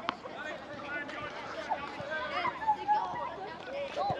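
Faint voices talking in the background, with one sharp bounce of a tennis ball on the hard court just after the start.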